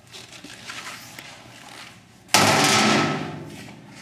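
A steel access door on the industrial vacuum's sheet-metal cabinet shut with a sudden loud bang about two seconds in. The bang rings on and fades over about a second and a half. Quieter handling noises come before it.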